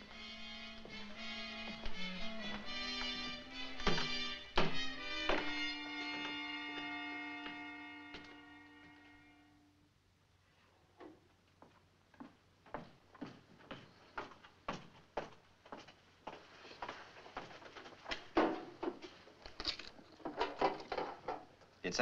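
Film score music ending on a held chord that fades away. Then footsteps on a hard floor, about two a second, followed by louder knocks as a metal deposit box is set on a table and its hinged lid is opened.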